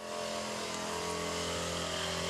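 The small engine of a backpack motorized disinfectant sprayer running steadily at an even speed.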